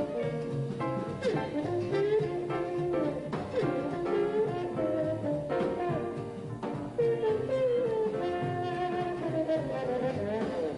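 Trombone playing a jazz solo line, with slides up and down between notes. Double bass, piano and drums back it in a swing or Dixieland style.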